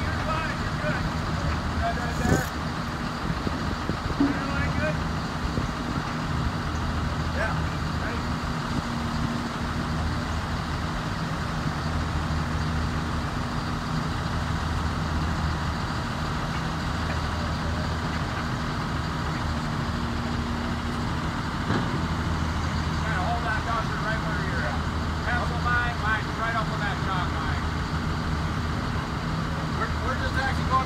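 Diesel engine of a crawler crane running steadily, a low continuous drone with a constant pitch.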